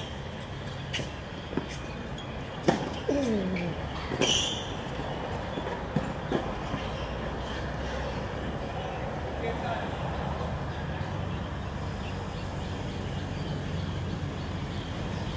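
Tennis ball struck by racquets during a rally on an outdoor hard court: a few sharp pops spaced irregularly over the first six seconds, with a brief high squeal about four seconds in. A steady low rumble runs underneath.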